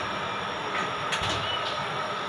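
A metal spatula stirring fish curry in an aluminium pot, with a few light scrapes against the pot about a second in, over a steady rushing background noise.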